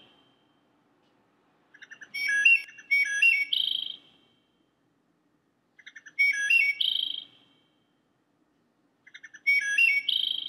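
Bird song: one short whistled phrase of stepped notes, sung three times about four seconds apart with silence between.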